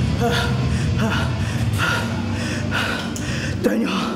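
A man panting heavily, a quick gasping breath about every 0.7 seconds: out of breath after a wrestling match.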